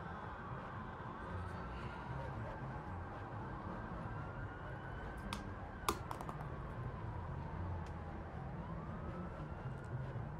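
Film soundtrack playing: slow, overlapping tones that rise and fall over several seconds, like a distant siren wail, over a low rumble, with a couple of sharp clicks about halfway through.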